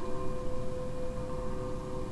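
Electroacoustic music built from slowed-down wind chime recordings, metal and bamboo chime layers combined: a few steady, overlapping ringing tones held through, over a low, noisy background.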